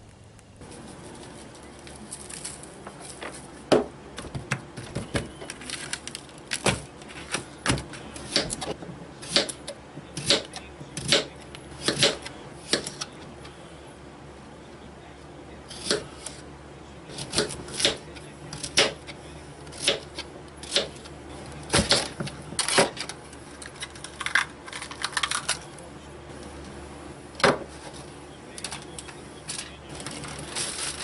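Knife cutting vegetables on a cutting board: irregular sharp knocks, one or two a second, some much louder than others, with a short lull midway.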